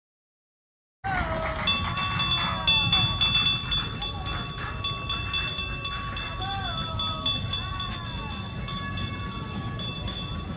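Trackless tourist road train driving past along the street, its bell ringing in rapid repeated strokes over a low running rumble, with people's voices mixed in. The sound starts suddenly about a second in.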